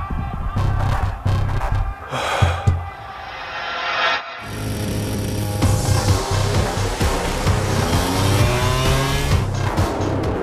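Background music with a steady bass and a rising whoosh that cuts off about four seconds in. Then MotoGP racing motorcycle engines are heard over the music, rising in pitch as the bikes accelerate away.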